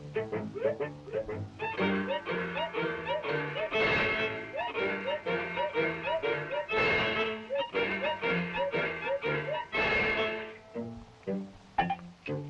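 Early sound-cartoon orchestral score playing a bouncy, rhythmic tune over a steady bass line. Three bright accents land about three seconds apart.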